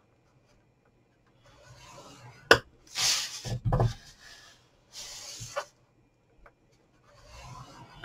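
Scoring stylus scraping down the groove of a scoreboard as cardstock is scored, in four or so short rasping strokes, with a sharp tap about two and a half seconds in.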